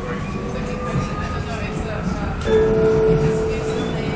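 Vienna U-Bahn Typ V metro car heard from inside while running, with a steady rumble of wheels on rail. About two and a half seconds in, a steady electric whine from the train's drive comes in and holds.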